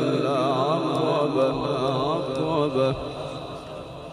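A man's voice reciting the Quran in the melodic, chanted style, holding a long ornamented note that wavers up and down. The note ends about three seconds in and dies away.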